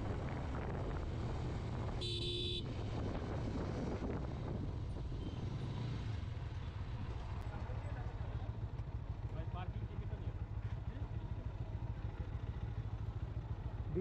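Motorcycle engine running at a steady low note, heard from the rider's position, then settling into a pulsing idle as the bike slows and stops in the second half. A short horn beep sounds about two seconds in.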